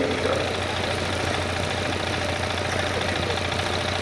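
Steady low hum and background noise picked up through the stage microphone and public-address system during a pause in speech; an even drone with no changes.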